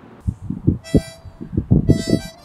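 Harmonica played in a rhythmic, percussive style: a fast run of short breath pulses starts just after the beginning, and a held reed note comes in about a second in, over the continuing pulses.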